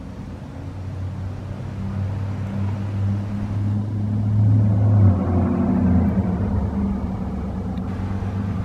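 A motor vehicle's engine with a low, steady hum, growing louder to a peak about five seconds in and then easing off a little, like traffic passing on the street.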